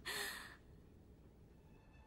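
A young woman's short, breathy sigh, about half a second long, at the very start, followed by faint held notes of soft music.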